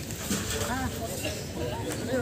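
Indistinct voices of people talking in the background, over steady outdoor noise.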